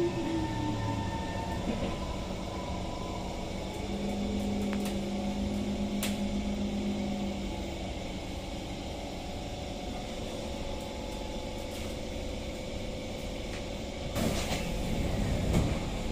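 SMRT C151 train's traction motors whining, the whine falling in pitch as the train brakes to a stop, followed by a steady hum. Near the end the passenger doors open with a loud burst of noise.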